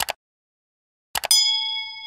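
Sound effects for a subscribe-button animation: a quick double click at the start, then a few clicks just after one second and a bell ding that rings on and slowly fades.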